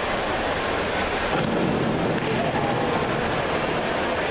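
Steady, even wash of noise in an indoor diving pool hall: water noise and the hall's echoing background, with no splash or board sound standing out.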